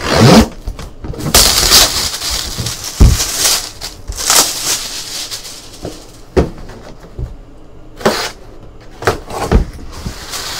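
Cardboard boxes being handled by hand: repeated scraping and sliding of cardboard against cardboard, with a few dull knocks as boxes are set down and one is opened.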